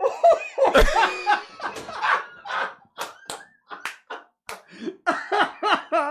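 Men laughing in long fits of short ha-ha bursts, which quicken to about four a second near the end, with a single thump about a second in.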